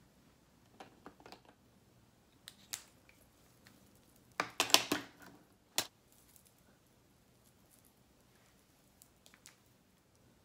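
Small objects being handled, heard as light clicks and taps. A quick run of sharp clicks comes about halfway through, then one more sharp click a second later.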